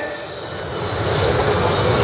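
Low rumble of a passing engine, growing louder through the two seconds, with a faint thin high whine near the end.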